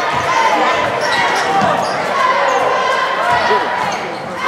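A basketball being dribbled on a hardwood gym floor, with sneakers squeaking in short gliding squeals as players move on the court, over the voices of spectators.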